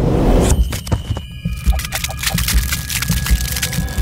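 Produced outro logo sting: a swell that peaks at the start gives way to deep, throbbing bass pulses overlaid with crackling clicks and a few thin, steady high tones.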